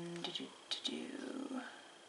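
A person's voice: a held, steady hum that breaks off just after the start, then a moment of soft, half-whispered muttering.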